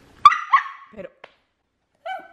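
Mini poodle puppy giving two short, high-pitched yips about a third of a second apart.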